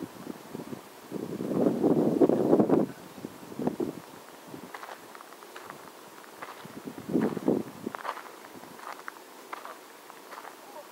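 Footsteps on a gravel path: scattered soft crunches through the middle and latter part. They come after a few muffled spoken words near the start, which are the loudest sound.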